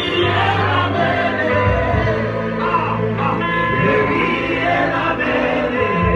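Live gospel worship song: a male lead singer on a microphone with a choir of backing voices over keyboard accompaniment and sustained bass notes.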